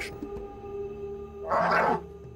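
A young lion snarls in one short, loud burst about one and a half seconds in, over a steady music drone.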